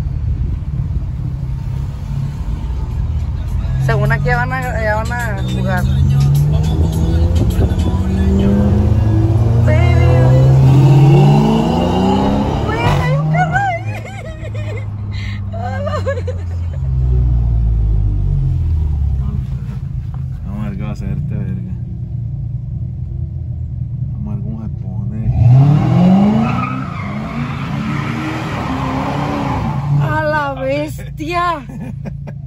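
Volkswagen Golf GTI Mk7's turbocharged four-cylinder engine heard from inside the cabin, accelerating hard through several upshifts from a few seconds in, then easing off. About 25 seconds in it revs up sharply once more.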